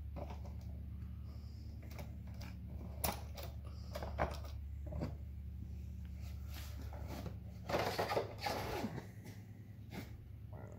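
Scattered light metallic clicks and knocks as a hand works the chain and clutch sprocket of a Stihl MS660 chainsaw, over a steady low hum. A louder scuffling handling noise comes near the end.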